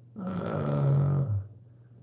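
A man's low, drawn-out "uhh" voiced between sentences, held about a second and then stopping.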